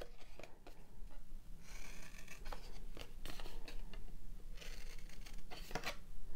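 Scissors snipping short slits into the edge of a cardboard disc: a series of separate crunchy cuts, with the cardboard handled between them.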